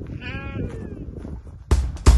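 A sheep bleats once: a single wavering call of about half a second, over a low background rumble. Drum-led music starts loudly near the end.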